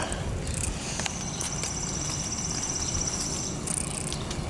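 A small animal's high, rapid, even trill, lasting about two and a half seconds from about a second in, over a steady low rumble.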